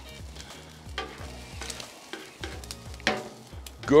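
Spatula scraping and turning fried rice and scrambled egg on a hot flat-top griddle, the food sizzling lightly, with a few sharper scrapes of the spatula on the plate.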